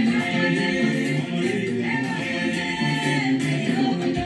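Gospel praise song in the Bassa language, sung by several voices together, with no instrument standing out.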